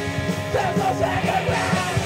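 Live rock band playing: a male singer sings into the microphone over electric guitars and a steady drum beat.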